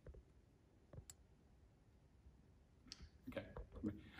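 Near silence, broken by a few faint clicks in the first second or so, then a short cluster of faint clicks and rustles near the end.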